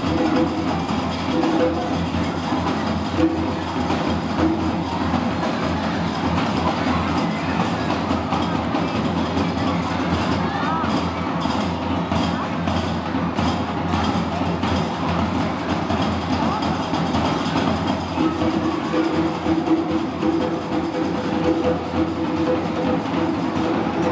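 Live Moroccan Gnawa music: a steady, fast clatter of qraqeb (iron castanets) with sustained pitched tones, mixed with the voices of a large crowd of children. The music sits thickest near the start and again near the end, with the children's noise more prominent in the middle.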